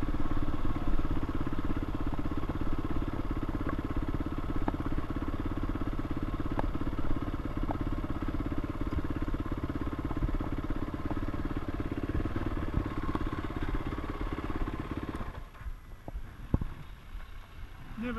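Yamaha WR450F's single-cylinder four-stroke engine running at low revs as the bike rolls slowly. About fifteen seconds in, the engine sound drops away, leaving a few faint knocks.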